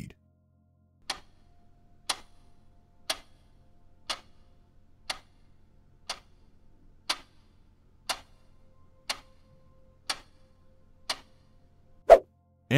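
Countdown-timer sound effect ticking like a clock, one sharp tick a second, eleven ticks in all.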